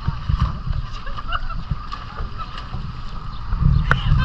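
Outdoor riverside noise: an uneven low rumble that swells and fades, with faint distant voices. A sharp knock comes near the end.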